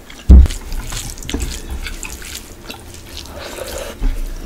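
Fingers mixing rice with chicken curry gravy on a plate by hand, making many small wet, sticky squelches and clicks. A loud low thump comes about a third of a second in.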